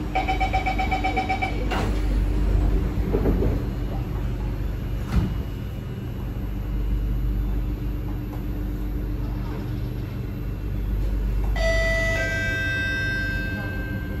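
Rapid high-pitched door-closing warning beeps from the MRT train's doors, stopping about two seconds in. Then the steady low hum of the carriage. Near the end a chime of several tones sounds, ahead of the on-board announcement.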